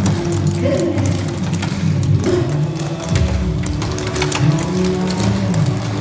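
Recorded music playing while clogging shoes tap in quick, irregular clicks on a stage floor during a clog dance.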